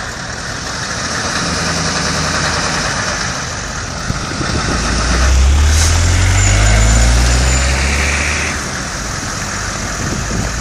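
Engines of a slow-moving column of 6x6 military cargo trucks. From about halfway a vehicle passing close grows louder, its engine rising in pitch as it speeds up, and it eases off again near the end.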